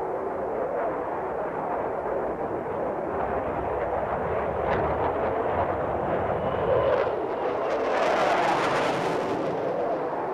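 Jet aircraft engine roar, a steady rumbling noise that turns brighter and hissier about eight seconds in for a second or so.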